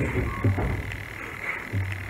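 A pause in a man's talk, broken by two short, low vocal sounds from him, about half a second in and again near the end.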